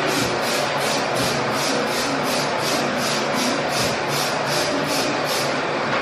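A trigger spray bottle of Clorox disinfecting cleaner being squeezed rapidly onto shower tile, at about three to four sprays a second. The spraying stops near the end.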